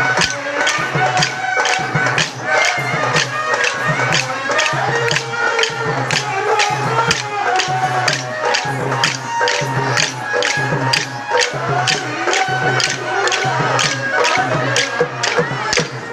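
Kolatam stick dance: wooden sticks struck together in a steady rhythm, about three sharp clacks a second, over loud accompanying music with a melody.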